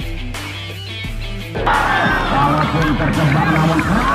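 Background music with a steady bass line. About a second and a half in, a crowd of spectators breaks into loud shouting and cheering over it at a penalty kick.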